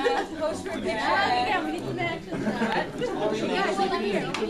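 Several people talking at once: overlapping, unintelligible chatter.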